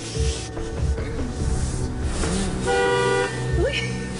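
A car horn sounds once, flat and steady for about half a second, around three seconds in, over soft background music.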